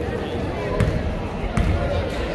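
Basketball dribbled on a hardwood gym floor, two bounces a little under a second apart, over the chatter of voices in the gym.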